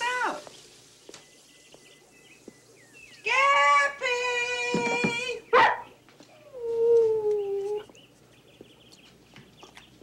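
A pet animal crying out: one long, steady call of about two seconds, a short sharp cry right after it, then a shorter call that falls slightly in pitch.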